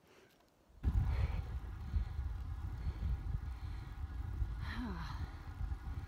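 Wind buffeting the microphone while riding a road bike, a loud fluctuating rumble that cuts in suddenly about a second in after near silence. A brief vocal sound near the end.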